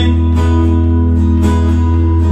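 Recorded pop-rock music in an instrumental passage without vocals: strummed guitar over a steady held low bass note.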